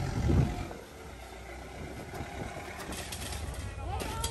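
Backhoe loader's diesel engine running with a low steady hum that stops about half a second in. After that only faint background noise remains, with a few light knocks near the end.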